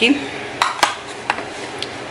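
Makeup compacts and eyeshadow palettes being handled and set down in a drawer organiser: four short, light clicks of hard plastic and metal cases, the loudest under a second in.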